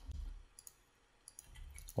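A few faint computer mouse clicks over a low hum of microphone or room noise.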